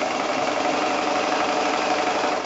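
Domestic sewing machine running steadily at speed, its needle stitching through quilt layers in free-motion quilting.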